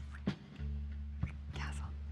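Soft background score with a guitar over sustained low notes, and short, quiet breathy sounds from a couple kissing, a few of them clustered around the middle.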